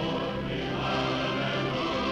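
Film-score music with a choir singing held chords.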